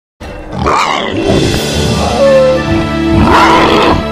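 Movie Pachycephalosaurus creature roars over dramatic music: a rough bellow about half a second in and a louder one near the end.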